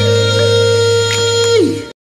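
A man's voice holding one long final sung note over a backing beat with a steady bass. About a second and a half in, the note falls in pitch and fades. The bass stops and the track cuts off.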